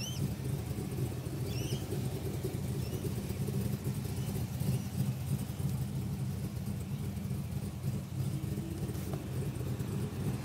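SS wagon's V8 engine idling steadily, a low even hum.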